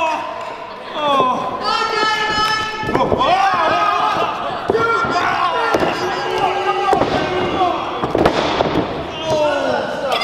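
High-pitched shouting and yelling from a small wrestling crowd, the voices rising and breaking off one after another, with a few sharp thuds from wrestlers on the ring.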